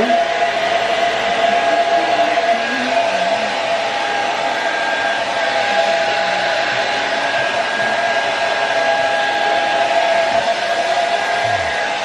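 Handheld hair dryer running steadily at a constant pitch, the kind of blowing used to dry adhesive spray on a lace frontal.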